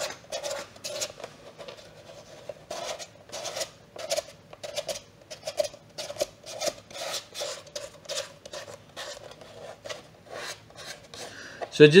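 Fingers rubbing and smearing paint across a plastic Stormtrooper armor piece, in quick, irregular strokes about two to three a second.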